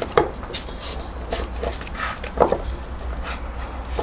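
Staffordshire bull terrier chewing and tearing at a plastic traffic cone: scattered crackles and knocks of the plastic, with a few brief dog vocal sounds.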